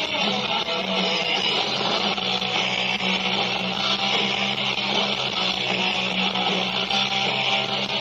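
Live rock band playing, led by electric guitars over bass, a dense, steady wall of sound with no let-up.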